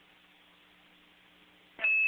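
Faint steady hiss and low hum of a narrow-band radio link. Near the end a short, single-pitched high beep sounds, the kind of tone that marks a space-to-ground transmission keying on.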